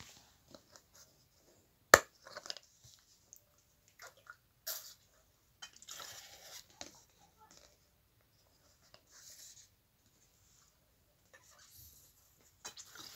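A plastic drink bottle handled close to the microphone: a sharp click about two seconds in, then scattered clicks and short crinkly rustles.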